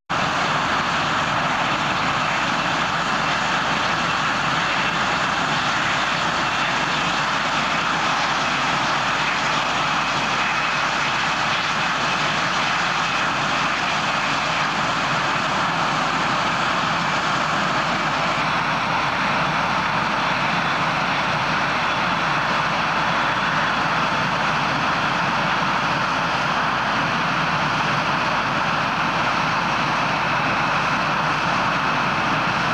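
Steady, loud jet noise from a Canadian CF-18 Hornet's twin General Electric F404 turbofans, an even rush with no let-up. The tone changes slightly about 18 seconds in.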